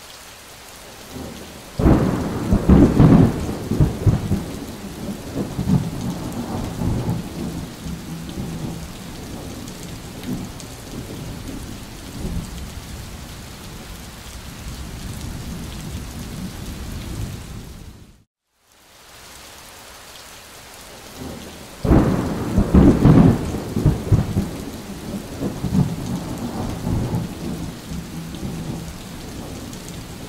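Steady rain with claps of thunder, a loud rumbling peal about two seconds in and another about 22 seconds in, each fading into rain. The sound cuts out briefly near 18 seconds and the same thunder-and-rain sequence starts again.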